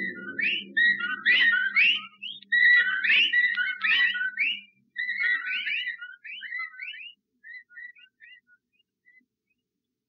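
A chorus of whistled whippoorwill-like bird calls, many short warbling notes overlapping around one pitch. They thin out and fade away over the second half. In the story the calling whippoorwills mean death. A low hum underneath dies out about halfway through.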